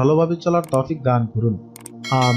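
A voice speaking, with sharp mouse-click sound effects from the subscribe-button animation: a quick double click about two-thirds of a second in and another near the end.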